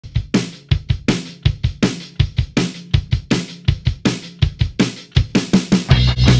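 Background music: a rock drum beat played alone, with kick, snare and cymbals in a steady rhythm and a quick drum fill near the end.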